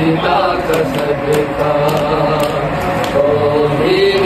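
A group of men and boys chanting a noha, a mourning lament, together in a slow, wavering melody, with a soft regular beat about every half second.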